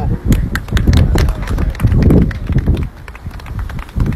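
A small outdoor crowd clapping and cheering, the claps quick and uneven, with wind rumbling on the microphone; the clapping thins out after about two seconds.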